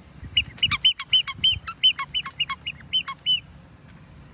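Small pink rubber pig toy squeaking: about fifteen short, high squeaks in quick succession over some three seconds, each one rising then falling in pitch.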